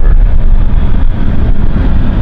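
Loud, steady low rumble of road and engine noise inside a moving car's cabin.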